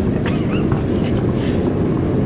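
Steady low rumble of a CN Tower glass-fronted elevator car running as it descends the tower.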